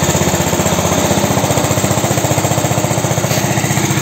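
Homemade four-wheel-drive minitractor's engine running steadily with a rapid, even beat as it pushes a trailer loaded with concrete curbs.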